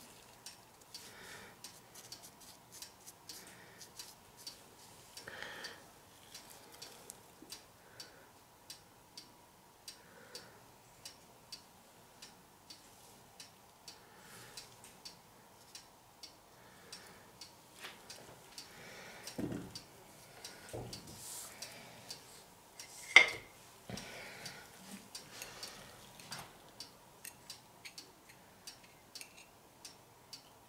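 Steady light ticking, about two ticks a second, with some brief rustling and one sharp knock about 23 seconds in.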